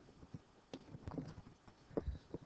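Faint, irregular clicks and light knocks from a computer mouse and desk, about one every half second, with a sharper click near the end as the page is advanced.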